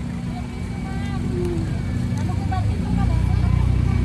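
A motor vehicle engine running steadily, louder from about three seconds in.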